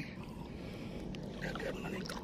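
Quiet, steady swishing of shallow seawater as someone wades over a seagrass bed, with faint distant voices in the second half.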